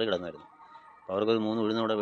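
A man's voice making long, drawn-out vocal sounds. It trails off about half a second in, pauses, and comes back as a steady held tone about a second in.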